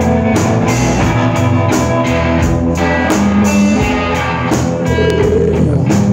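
Live rock band playing an instrumental passage between sung verses: electric guitar over a steady drum-kit beat.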